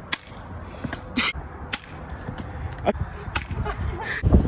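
Several sharp cracks at irregular intervals, the first right at the start and the rest spread over the next few seconds.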